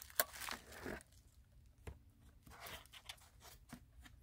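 Faint handling noise as a restored 1970 Cadillac dashboard clock is moved about on plastic bubble wrap: a sharp click just in, crinkling through the first second, then a few faint, unevenly spaced clicks.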